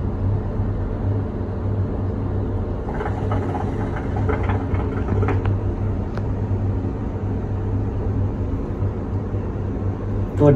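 A steady low mechanical hum, with a stretch of irregular gurgling about three to five seconds in: the bubbling of a hookah's water base as smoke is drawn through it.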